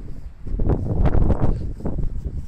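Wind buffeting the microphone: a low, gusting rumble that swells about half a second in and eases near the end.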